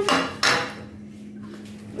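A single sharp knock or clatter about half a second in, fading quickly, followed by a low steady hum.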